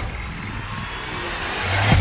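A whoosh sound effect that swells steadily louder, with a deep bass tone coming in near the end as it builds into electronic music.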